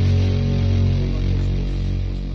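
Background rock music: a held, distorted electric guitar chord ringing out and slowly fading.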